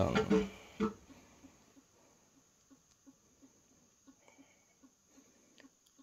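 A front-load washer very quiet near the end of its cycle: only faint, soft low knocks at an uneven pace of roughly two or three a second.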